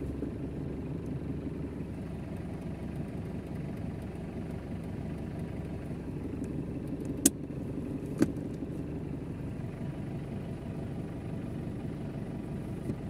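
Chevrolet Tavera engine idling steadily, heard from inside the cabin, with two sharp clicks a little past the middle.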